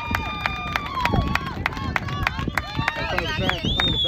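Spectators and teammates cheering and calling out after a base hit, several voices overlapping, with scattered hand claps; one high call rises and falls near the end.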